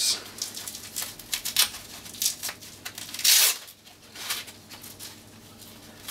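Velcro hook-and-loop straps on a knee brace being peeled apart: several short rips, the longest and loudest just after three seconds in.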